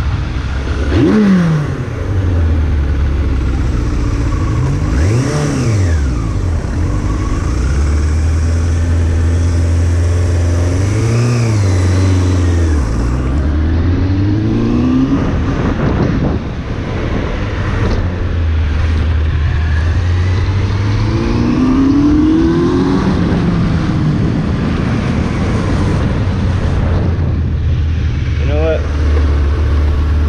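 Suzuki Bandit 600's inline-four engine under way, its pitch rising and dropping several times as the rider accelerates, shifts and slows, with wind rushing over the microphone. In the last few seconds it settles to a steady low running note.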